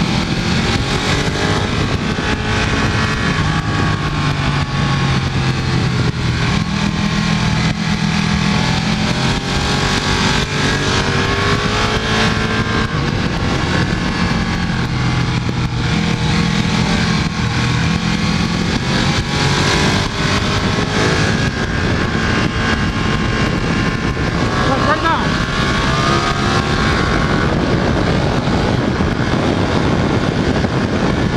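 Ducati 1299 Panigale S's Superquadro V-twin engine running hard on track, its pitch rising and falling as the rider accelerates and shifts, heard from an onboard camera under a steady rush of wind noise.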